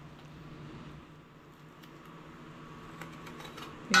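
Faint, steady low hum of an electric fan, with a few light handling clicks near the end.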